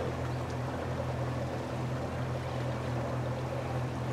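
Boat motor running steadily, a low even hum with a faint hiss of water and air over it.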